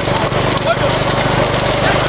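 Bullock cart racing at speed: the cart rattling and the bulls' hooves clattering on the road in a dense, continuous din, over a steady low hum.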